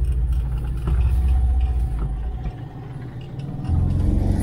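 Cabin noise of a 1973 Volkswagen Kombi under way: the rear-mounted air-cooled flat-four engine and road rumble, heard from inside. The rumble dips for about a second near the end, then picks up again.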